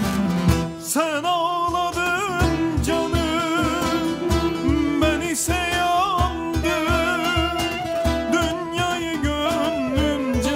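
Live Turkish folk music (türkü) from a small ensemble of acoustic guitar, bağlama and clarinet, a wavering melody over a steady beat.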